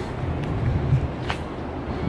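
Low, steady rumble of outdoor city background noise, with one brief hiss a little past halfway.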